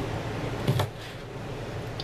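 A meat cleaver chopping once through a smoked sausage onto a plastic cutting board: a single thud about three quarters of a second in, over a steady low room hum.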